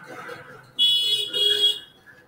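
A loud, high-pitched shrill tone like an alarm or buzzer sounds from about a second in, for about a second, in two close pulses. It is background noise in the recording room, not part of the screen content.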